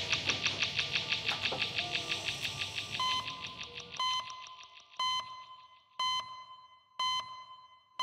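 A fast-pulsing music cue fades out over the first three seconds. From about three seconds in, a pitched electronic beep sounds once a second, each one short and dying away, in step with an on-screen clock counting the seconds.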